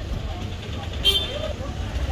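Low steady street rumble with faint voices, and a short high beep about a second in.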